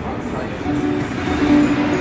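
Acoustic guitar picked by hand, a few notes ringing and held between sung lines.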